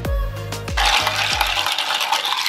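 Ice clinking and rattling in a glass mason jar of iced coffee as a spoon stirs it, starting a little before halfway through. It plays over background music with a deep beat that stops shortly before the end.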